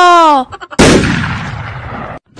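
A high voice's drawn-out exclamation falls in pitch and stops. Just under a second in, a sudden loud blast like a gunshot fades away over about a second.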